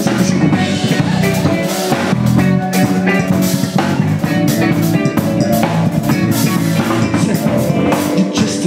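Live band playing an instrumental passage: a drum kit keeping a steady beat with cymbals and bass drum under an electric bass guitar line.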